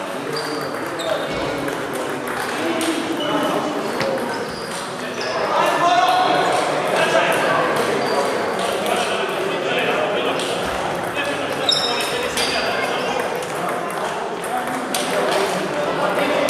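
Table tennis balls clicking off bats and tables in quick, irregular rallies at several tables at once, with echo in a sports hall and voices talking in the background.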